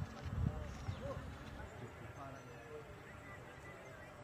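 Faint, distant voices over steady outdoor background noise, with low rumbling thumps in the first second.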